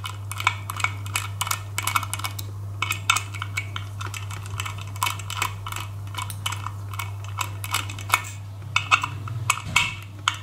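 Small screwdriver working out the screws of a hard disk's platter clamp on the spindle hub: quick, irregular small metallic clicks and ticks throughout, over a steady low hum.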